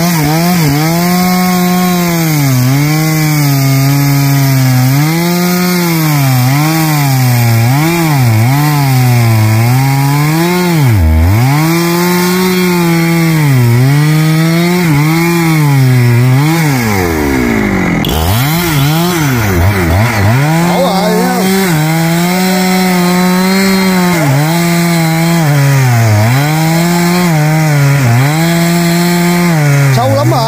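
Husqvarna 365 two-stroke chainsaw cutting into the base of a large rain tree trunk. The engine pitch repeatedly sags under load and climbs back. Around 11 seconds and again around 17 seconds it drops briefly toward idle before revving up again.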